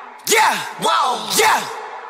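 A break in a hip-hop track: the bass drops out, leaving three short shouted vocal calls about half a second apart, each sliding up and then down in pitch, with an echo trailing after them.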